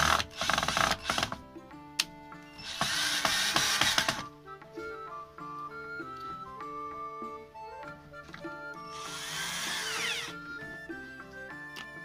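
Cordless drill-driver running in short bursts as it drives the screws of a Stanley electric planer's side cover: one burst at the start, another about three seconds in, and a third about nine seconds in. Background music plays underneath throughout.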